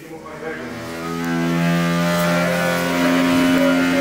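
Cold-water pipe humming with a loud, steady drone while water is being tapped. It swells about a second in, and a second, higher tone joins near the end; the owner blames the water line and means to have it replaced.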